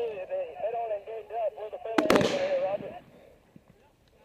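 A single sharp gunshot about two seconds in, ringing briefly, over faint men's voices that die away near the end.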